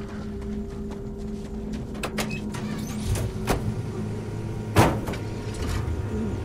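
A vehicle engine idling steadily, with several sharp knocks over it, the loudest just under five seconds in.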